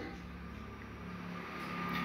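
A faint, steady low mechanical hum with no speech, growing a little louder toward the end.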